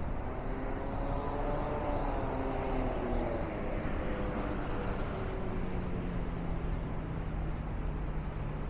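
Steady city street traffic noise, with the hum of a passing engine that glides slowly up and then down in pitch over the first few seconds, and a low steady engine drone later on.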